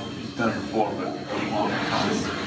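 Speech: a man talking, most likely an interviewer's question that the transcript missed.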